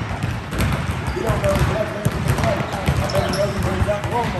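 Basketballs bouncing on a gym floor: many irregular thuds, several balls at once, under background chatter.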